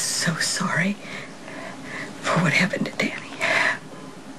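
A woman crying: breathy, broken sobs in short bursts at the start and again in the second half.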